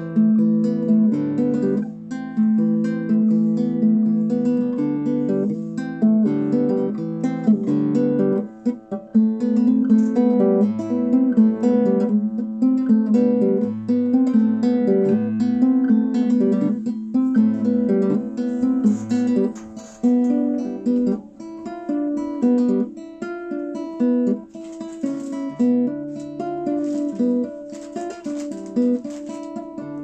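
Solo guitar playing an unbroken stream of plucked notes and strummed chords, with a brief drop in loudness about eight seconds in.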